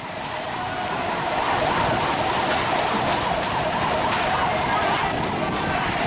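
A vehicle siren wailing, its pitch wavering up and down, over loud, dense street noise. The sound builds over the first second, then holds steady.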